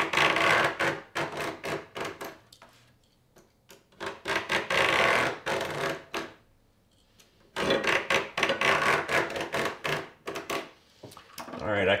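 Utility knife blade scoring thin painted perforated sheet metal along a steel straight edge: three long scraping strokes with short pauses between, each full of rapid ticks as the blade crosses the rows of holes. The scoring cuts through the paint along the line where the sheet will be bent and snapped.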